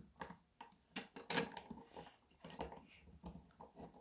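Plastic Lego bricks clicking as they are handled and pressed together by hand: a run of small, irregular clicks.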